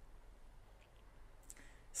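Near silence: faint room tone with a low hum, a few faint clicks, and a short noise just before speech resumes.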